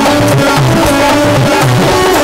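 Live Haryanvi folk music without singing: a dholak drummed in a quick rhythm, its low strokes bending in pitch, under steady held melody notes.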